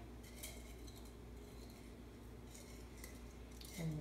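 Quiet kitchen room tone with a steady low hum and a few faint clicks from small objects being handled.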